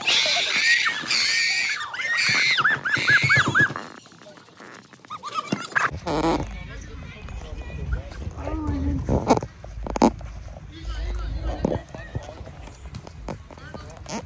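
A person's shrill voice crying out in quick, repeated rising-and-falling pulses for the first four seconds. After a break, wind rumbles on the microphone, with a few sharp soccer-ball kicks and distant players' shouts.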